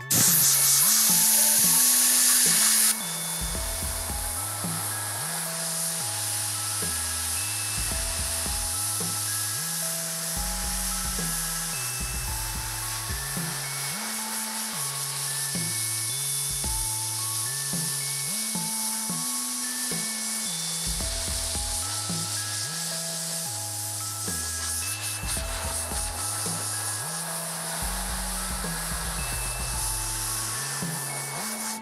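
Compressed air from a thin blow nozzle hissing loudly against a wet, freshly washed-out screen, blowing the water off to semi-dry the emulsion. It cuts off suddenly about three seconds in. Background music with a stepping bass line follows, over a softer steady hiss as the air keeps blowing.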